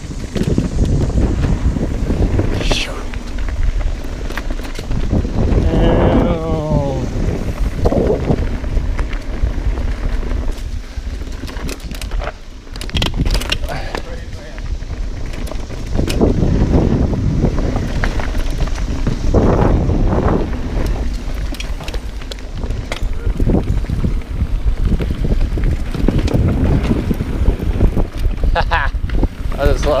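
A mountain bike ridden fast down a dirt trail: wind buffeting the microphone over the rumble and rattle of the tyres and bike on dirt and wooden-plank berms. A rider's voice calls out briefly about six seconds in.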